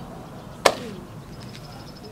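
A single sharp hand clap about two-thirds of a second in, much louder than anything else here.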